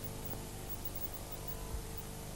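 Low, steady hiss with a faint mains hum beneath it: the background noise of an old analogue television recording in the quiet gap between two adverts.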